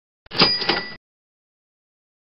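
Short slide-transition sound effect marking the move to the next exam question: a click, then two quick metallic rings with clear bell-like tones, over in under a second.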